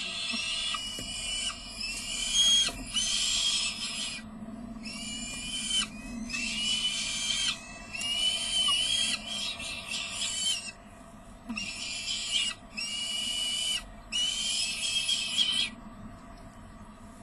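Peregrine falcon chicks begging for food while being fed: a run of about nine rasping, high-pitched calls, each around a second long, separated by short gaps, with a longer pause a little past the middle.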